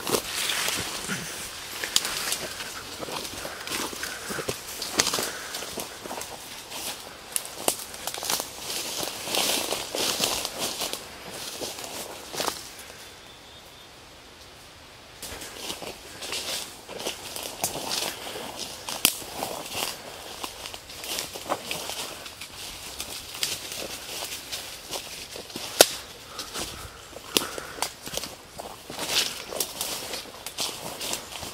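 Footsteps pushing through dense ferns and brush, leaves and branches swishing against clothing and the camera, with many small twig cracks. The rustling drops to a brief lull about halfway through, and a single sharp snap stands out near the end.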